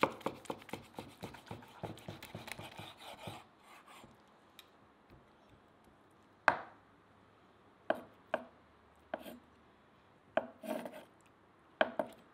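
Knife slicing through a grilled steak on a wooden cutting board: a quick run of rasping cutting strokes through the seared crust in the first three seconds or so, then several single sharp knocks on the board.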